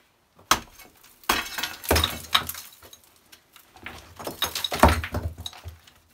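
Stone and old mortar being broken out of a thick rubble-stone wall with hand tools: irregular knocks and clinks of metal on stone, with bits of rock breaking loose. The knocks come in two main runs, one starting just over a second in and one about four seconds in.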